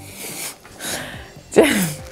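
A woman's held-back laughter: two breathy puffs of air, then near the end she blurts out a syllable that falls in pitch.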